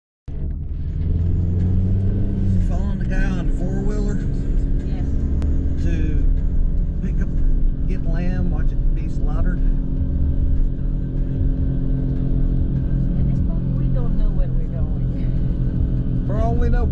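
Car driving along a street, heard from inside the cabin: a steady low engine and road rumble.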